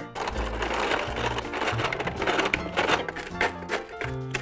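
Hand-cranked plastic cereal crusher of a toy snack maker being turned, a fast, uneven run of clicking and grinding as dry cereal is crushed, over background music.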